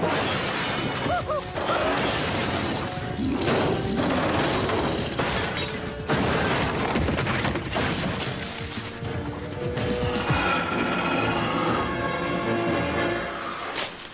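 Cartoon action sound effects: a dense, continuous din of crashing, smashing and shattering with many sharp impacts, over background music. In the last few seconds the crashing thins out and the music's held notes come forward.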